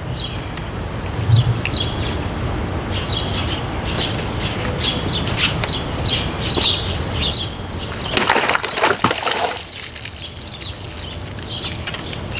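Outdoor ambience: an insect trilling steadily at a high pitch, birds chirping, and a low steady rumble. There is a soft thump about a second in, from a plastic water bottle set down on a wooden stump, and a rustling burst about two-thirds of the way through.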